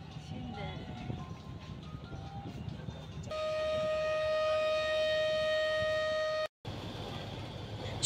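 A river passenger launch's horn sounds one steady, loud blast of about three seconds, starting about three seconds in and cutting off suddenly. Underneath is a low, steady rumble of the launch's engine with faint voices.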